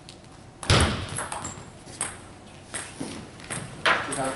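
A table tennis rally in a large hall: a heavy thud on the floor as the serve is struck, about a second in, then the sharp clicks of the ball off bats and table at an irregular pace until the point ends.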